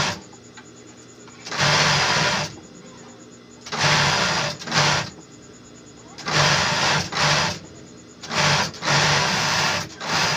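Industrial overlock (serger) sewing machine running in short bursts, about seven of them, each half a second to a second long, stopping briefly between runs as fabric is fed through.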